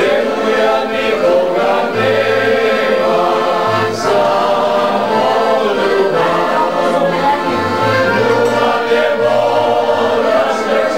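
A group of people singing a song together in chorus, with low bass notes from an upright stringed bass underneath.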